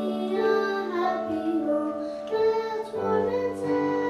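Young girls singing a song together into a microphone over instrumental accompaniment, with a low accompaniment note held through the first half.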